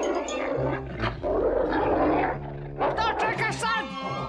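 Cartoon dog growling and snarling as it tears into a roast bird, in noisy bouts with the longest one in the middle. Background music plays under it.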